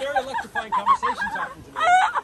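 A woman laughing, a run of high, choppy laughs.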